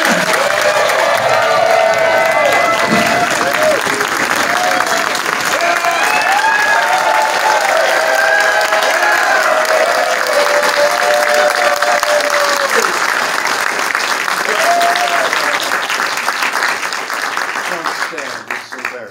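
Large theatre audience clapping steadily, with voices calling out and whooping over the applause. The clapping thins out right at the end.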